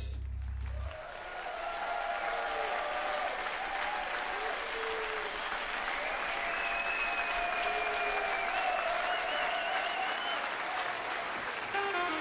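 Concert audience applauding at the end of a jazz number. The band's last low sustained note cuts off about a second in, leaving steady clapping throughout, with a few voices faintly audible in it.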